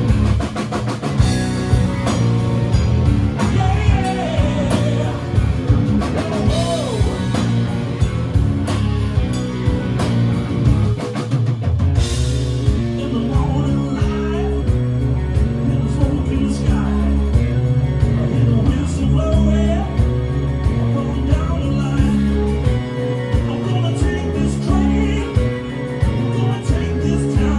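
Live rock band playing: electric guitar, bass guitar, keyboards and drum kit, with a male lead vocal singing over it in the second half.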